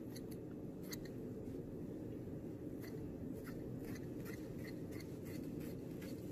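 Faint rustling and light scattered ticks of tulle fabric being handled, over a steady low hum.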